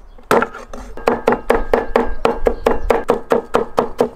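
Chinese cleaver chopping garlic and ginger on a wooden chopping board. One stroke comes first, then from about a second in a quick, even run of about five or six chops a second.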